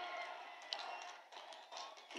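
A pause in a man's amplified speech: the faint echo of his last word dies away. After that there is only faint background noise, with one small tap less than a second in.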